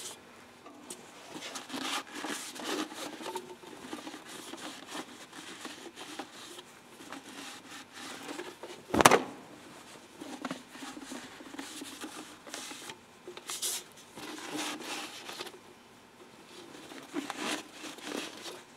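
Handling noise from a removed corrugated rubber air intake hose as it is turned over and rubbed by hand: scraping and rustling on and off, with one sharp knock about nine seconds in.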